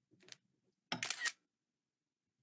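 iPad screenshot shutter sound: a camera-shutter click about a second in, preceded by a fainter, shorter click.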